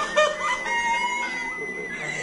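A woman's high-pitched laugh: a few quick pitched bursts, then one drawn-out note.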